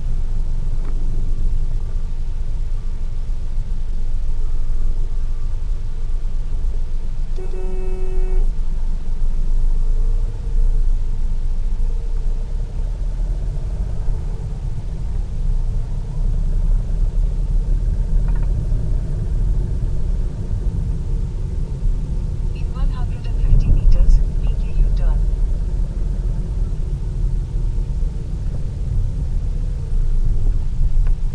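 Steady low rumble of a car's engine and tyres heard from inside the cabin while driving through city traffic. A vehicle horn honks once for about a second, about eight seconds in, and a louder cluster of higher traffic sounds comes about three-quarters of the way through.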